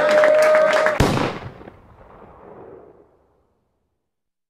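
Crowd cheering and clapping, with one man's voice holding a long shout, cut off by a single sharp thump about a second in; the noise then dies away to silence.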